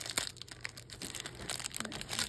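Clear plastic wrapper of a baseball card pack crinkling as fingers pull it open, a run of irregular crackles.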